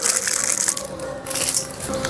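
Hands handling clear plastic eyeglass cases: crackly plastic rustling, in two spells with a short lull about a second in.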